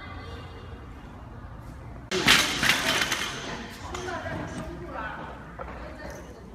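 Loaded barbell with bumper plates dropped onto the lifting platform about two seconds in: a sudden loud crash with metallic clatter that rings on and dies away over a second or so.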